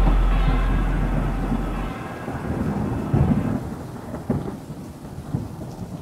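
Thunderstorm sounds: a deep rumble of thunder dies away over the first two seconds, then rain goes on under a few sharp cracks of thunder, about three, four and five seconds in.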